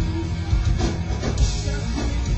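Live rock band playing loud and steady on stage, with electric guitar over a drum kit.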